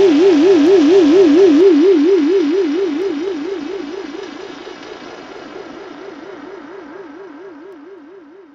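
Soundtrack music: a single held tone with a fast, even wobble in pitch and fainter overtones above it, fading out gradually from about two seconds in.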